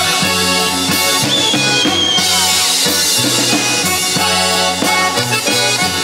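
Upbeat stage band music led by a garmon (Russian button accordion) over a drum kit, with a steady beat.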